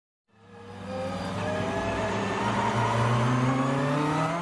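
Logo-intro sound effect: an engine-like drone fades in over the first second and then rises slowly in pitch, like a vehicle accelerating.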